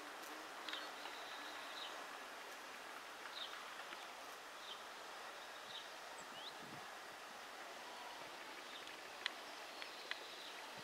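Faint outdoor ambience: a steady low hiss with scattered short, high bird chirps, one of them a quick rising note about six and a half seconds in. A single sharp click sounds near the end.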